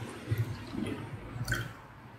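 Faint sound of soda being poured from a glass bottle into a plastic cup, with a small click about one and a half seconds in.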